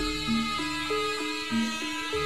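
Live music from a Javanese jaranan troupe's band: a melodic line of clear notes stepping up and down every fraction of a second. A deep low sound fades out at the start and leaves the melody mostly on its own.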